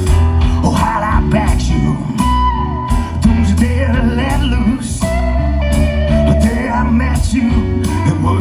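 A live band playing through a stage PA, heard from the crowd, with a guitar to the fore over a strong bass line.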